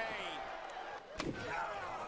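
Sharp smack of a blow landing in a televised wrestling match, a little over a second in, under a commentator's voice.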